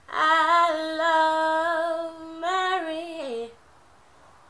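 A woman singing unaccompanied: a wordless sustained note that steps up about two and a half seconds in, then slides down and ends about a second before the end.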